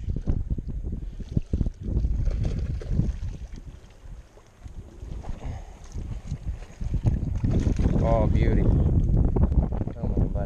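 Wind buffeting the microphone in uneven gusts, with small clicks from handling a spinning rod and reel in the first few seconds. A short murmur of a man's voice comes about eight seconds in.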